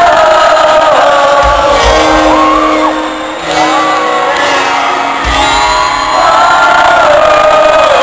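Live rock band playing a ballad in an arena, with sung vocals over electric guitars and bass, and the crowd shouting and singing along, recorded from within the audience so the sound is reverberant and crowd-heavy.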